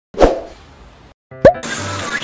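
A cartoon-style plop sound effect, a sudden sound with a sharply falling pitch, followed about a second and a half in by a second plop as background music starts.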